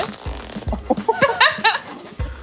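Plastic cling film being pulled off a roll and stretched around two people, in short uneven rasps, with a few brief vocal sounds in the middle.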